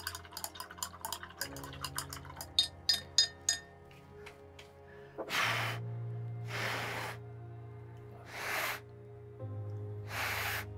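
Background music with held notes and a quick run of ticks in the first few seconds; then, from about five seconds in, four short puffs of breath, blowing on the freshly painted acrylic layer to dry it.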